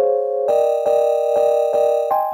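A sampled keyboard chord (the 'Chord Keys F# Bootleg' sound) repeating in a very short loop. It is re-struck about four times a second, and the chord rings on between strikes.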